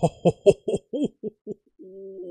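A man laughing: a run of short pitched 'ha' bursts that grow fainter and further apart, then a held hum near the end.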